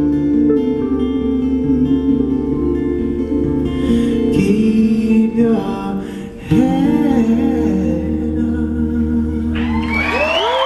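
Live solo acoustic guitar with a man singing long, drawn-out notes, closing out a slow folk song. Just before the end, the audience starts to cheer and applaud.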